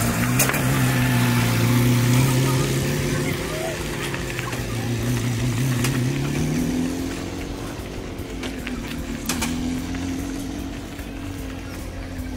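Homemade buggy's engine running as the car pulls away, its note rising and dipping and growing fainter as it goes.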